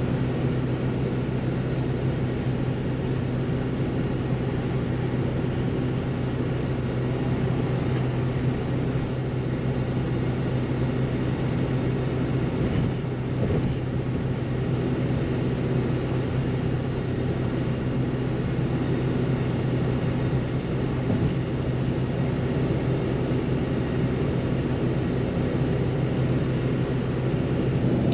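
Steady engine and road noise inside a moving truck's cabin at cruising speed, with a constant low hum and no change in pitch.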